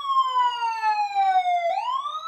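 Siren wailing: one long tone sliding slowly down in pitch, then sweeping quickly back up near the end.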